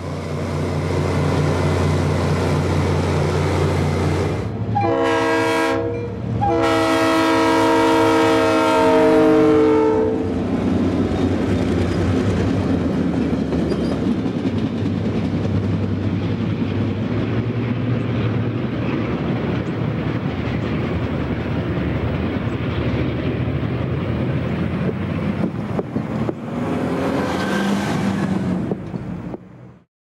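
Diesel locomotive horn sounding twice, a short blast then a longer one of about three seconds, followed by the steady noise of a freight train rolling past. Before the horn, a rail grinder's engines run with a steady low drone.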